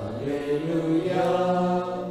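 A priest chanting part of the Catholic Mass in a man's voice: a slow melody of held notes, stepping to a new note about a second in.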